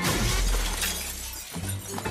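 Film sound effect of a sci-fi energy-weapon blast and glass shattering. The shards spray loudly at first and fade over about a second and a half, over a deep low boom that cuts off near the end.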